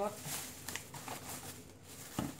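Thin plastic shopping bag rustling and crinkling as a hand rummages inside it and pulls an item out.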